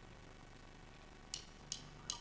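Quiet stage room tone. About a second and a half in come two sharp clicks about a third of a second apart: the opening beats of a drummer's count-in to the band's next song.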